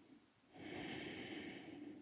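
A woman's single audible breath, starting about half a second in and lasting about a second and a half, taken while holding a deep yoga lunge.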